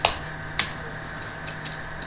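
A few keystrokes on a computer keyboard: a sharp click at the start, another about half a second later, then a faint one.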